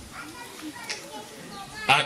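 Low chatter of many students' voices in a crowd, with no single voice standing out. Near the end a man's voice starts loudly.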